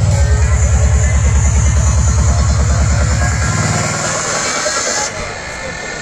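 Psytrance playing over a festival sound system: a fast, steady kick drum and bass drop out about halfway through into a breakdown, with a hissing sweep that cuts off about five seconds in.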